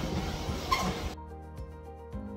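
Treadmill belt and running footfalls heard through a phone microphone, cut off about a second in by background music with a steady beat.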